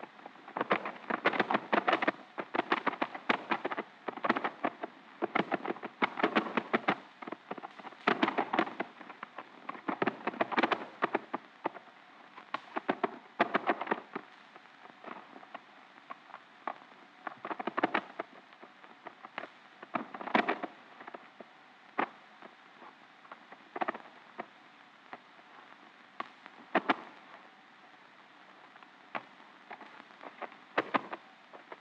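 Two fighting cocks scuffling in the pit: flurries of rapid wing-beats and clattering, close together at first and sparser and more spaced out in the second half.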